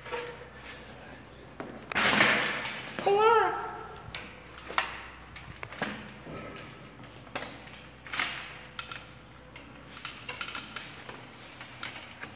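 Homemade trike's chain and crank clicking and clinking as it is pedaled slowly and strains to move. There is a louder rush about two seconds in and a brief wavering whine just after.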